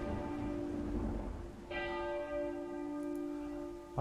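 A bell tolling. A stroke from just before is still ringing, and a second stroke about two seconds in rings out slowly.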